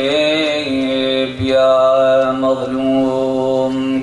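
A man chanting Arabic religious salutations in a slow, melodic recitation, holding two long notes with a brief break about a second and a half in.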